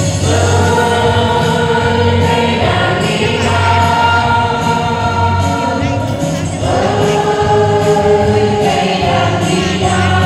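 A mixed group of men and women singing a Vietnamese song together through microphones, accompanied by a strummed acoustic guitar. The voices hold long notes, moving to a new note about every three seconds.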